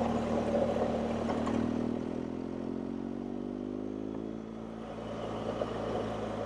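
BMW motorcycle engine running at low road speed, its note rising gently as the bike speeds up.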